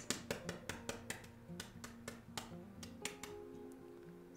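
Eggshell of a soft-boiled egg crackling as it is cracked and peeled by hand: a quick run of small sharp clicks over the first two seconds or so, thinning out after. Soft background music plays underneath.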